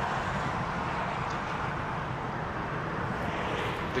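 Steady urban background rumble of distant traffic, with no distinct events, growing a little brighter near the end.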